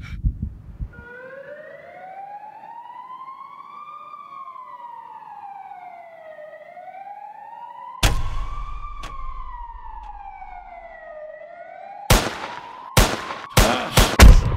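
Police siren wailing, its pitch rising and falling slowly, about five seconds per cycle. A heavy bang comes about eight seconds in, and several sharp bangs come in quick succession near the end.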